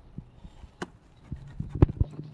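A few sharp clicks and knocks, spaced out, the loudest one near the end, over a faint low hum.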